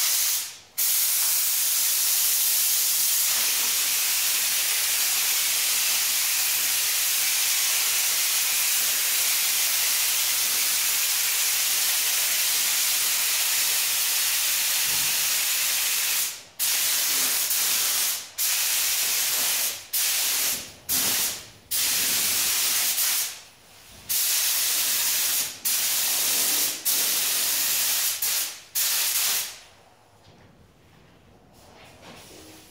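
Paint spray gun hissing steadily as silver metallic base coat goes onto a car fender in long passes. In the second half the trigger is let off between strokes, so the hiss stops briefly about ten times.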